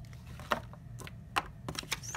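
Light, sharp clicks and taps from hands handling a cash envelope and paper bills: one click about half a second in, another a little after a second, then a quick run of several near the end.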